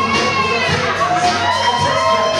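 A party crowd cheering and shrieking, with several long, high yells that rise and fall, over background music.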